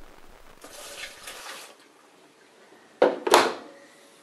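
Water poured from a glass into the empty tub of a Bosch dishwasher, splashing for about a second. Then, about three seconds in, the dishwasher door swings shut with two loud clunks as it latches.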